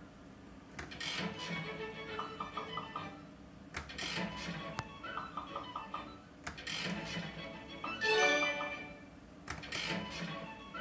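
Wish Upon a Leprechaun fruit machine playing its spin sounds over and over, about every three seconds: a click, a short musical jingle and a quick run of ticks, four spins in all. A louder gliding tone comes near the end.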